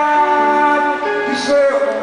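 A man singing live with guitar accompaniment, holding long notes that slide down about one and a half seconds in.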